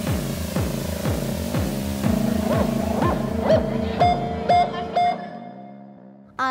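Electronic music: a pulsing bass line of short falling swoops, about three a second, over held synthesizer drones. From about halfway, rising glides up to short high notes join in, and the music fades out near the end.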